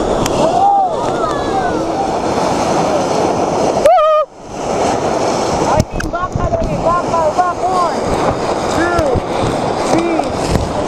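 Rushing whitewater around a raft, a steady loud roar of river water, under short shouts and whoops from the paddlers. One loud yell comes about four seconds in.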